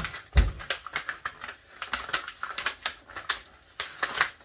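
Cut heat-transfer vinyl being weeded by hand: waste vinyl peeled off its clear carrier sheet with a run of quick, irregular crackles and ticks. A dull knock on the table comes about half a second in.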